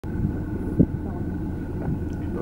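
A steady low engine-like rumble, with one short dull thud just under a second in, and faint voices.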